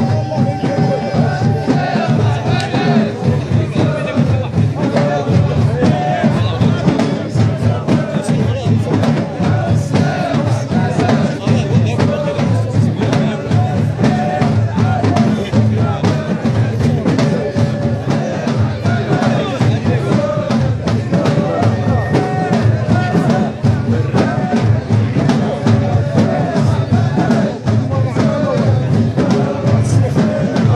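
Jilala hadra trance music: drums beaten in a steady driving rhythm under men's voices chanting, with the noise of a packed crowd around them.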